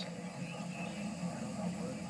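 A quiet pause between narration: faint steady hiss with a low hum, and no distinct event.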